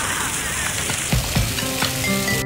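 Steady hiss of an ornamental fountain's water jets splashing into its basin, cut off about a second in as background music with low beats and sustained notes begins.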